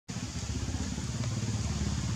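A small engine running steadily nearby: a low rumble with a rapid flutter.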